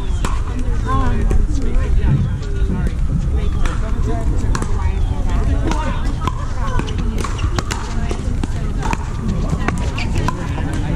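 Pickleball paddles striking the plastic ball in rallies across several courts: many sharp, irregular pops. Voices chatter throughout, over a low rumble of wind on the microphone.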